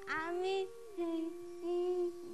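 A woman's high-pitched voice singing three short wordless phrases, the pitch sliding up and down, over faint steady held tones.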